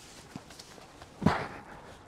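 A shoe planting hard against a concrete wall as a person springs up to climb it: one short thump with a scuff about a second in, after a faint tap.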